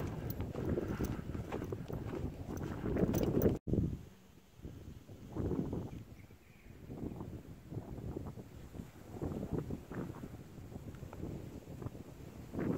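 Footsteps of someone walking on a grassy track, with rustling and wind on the microphone. The sound cuts off abruptly about three and a half seconds in, and afterwards it is quieter, with occasional soft rustles and gusts.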